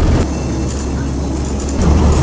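Engine drone and road noise heard inside a moving van's cab: a steady low hum under an even rumble, a little quieter through the middle.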